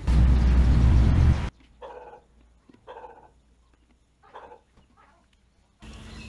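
A loud rushing noise with a heavy low rumble that cuts off suddenly about a second and a half in, then a dog barking faintly a few times.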